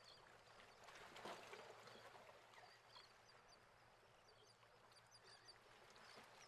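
Near silence: faint background hiss, with a few faint high chirps near the end.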